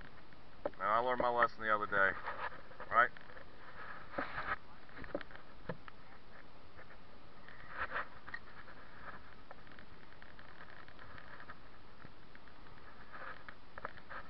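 A person's voice, brief and wordless, in the first few seconds, then a steady faint hiss with a few soft ticks.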